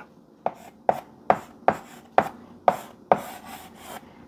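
Chalk on a blackboard, writing a number and drawing a box around it: a run of sharp taps and short strokes, about two a second, ending in one longer scraping stroke.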